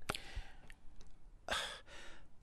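A person's breathing in a pause in conversation: a soft breathy exhale at the start, then a short, louder intake of breath about one and a half seconds in.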